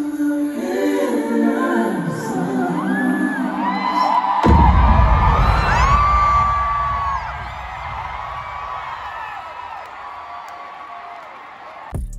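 Live stadium concert heard from the crowd: held, slowly falling sung or synth notes, then a sudden deep bass hit about four and a half seconds in, with the crowd screaming and whooping over it before the sound eases off.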